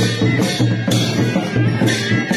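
Naumati baja, the traditional Nepali wedding band of wind instruments and drums, playing dance music: a high piping note held over drum beats about two a second.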